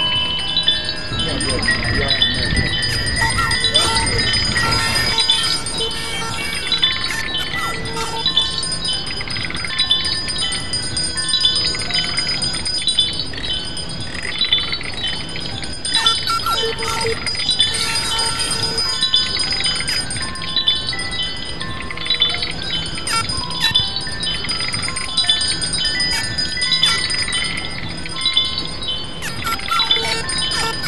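Lo-fi improvised Christmas sound collage of layered, looping chime tones mixed with a circuit-bent Christmas toy. A high chiming figure repeats over and over above held tones, with a low rumble under it for the first few seconds.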